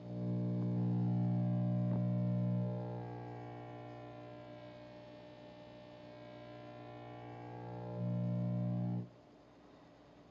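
Unidentified radio signal near 403.75 MHz, AM-demodulated by an RTL-SDR receiver and played as audio: a steady buzz with many even overtones. It is loud for the first few seconds, fades as the tuning is swept away across the signal, swells again near the end and cuts off suddenly about nine seconds in as the tuning moves past the signal's edge.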